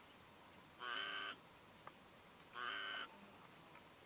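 Two harsh animal calls, each about half a second long and about a second and a half apart.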